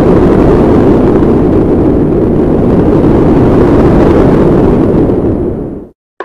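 A loud, steady rumbling sound effect, like a long explosion rumble, that holds without letup and cuts off sharply near the end.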